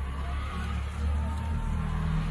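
Live concert sound between songs: a heavy low rumble with crowd noise and a few faint high cries or whistles. The low rumble changes about a second and a half in, just before the band starts.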